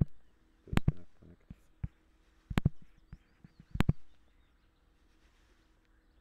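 Computer mouse clicking: about five sharp clicks in the first four seconds, some in quick press-and-release pairs.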